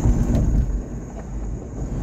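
Steady low road rumble of a car driving, tyres on a concrete bridge deck, heard from inside the cabin.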